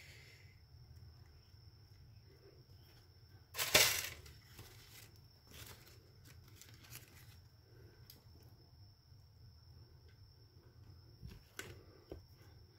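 Quiet handling sounds of a small plastic spoon scooping powdered cinnamon from a plastic tub, with a few faint clicks and one louder, brief rustle about four seconds in.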